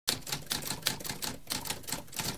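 Typewriter keys being struck in quick succession, several clacks a second.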